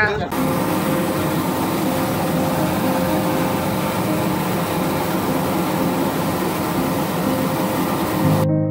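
Caracal military helicopter's turbines and rotor running, heard from inside the cabin as a loud, steady noise with a faint hum in it.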